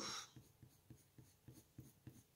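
Colored pencil shading on paper: faint, quick scratching strokes at about four a second.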